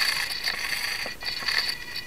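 Swashplate servos on a 450-size flybarless helicopter, driven by the Tarot ZYX-S gyro's corrective cyclic movement as the helicopter is tilted by hand. They make a steady high-pitched whine that breaks off briefly about a second in.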